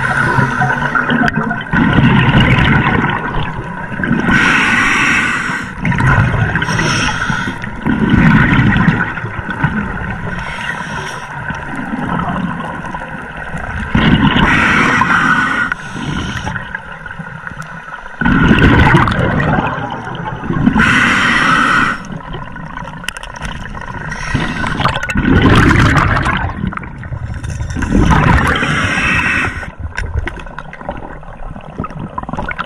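Scuba diver breathing underwater through a regulator: loud gurgling bursts of exhaled bubbles every few seconds, with quieter stretches between breaths.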